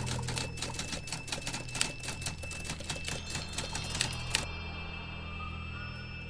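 Typewriter sound effect: rapid, even key clicks that stop sharply about four and a half seconds in, over a low sustained musical drone.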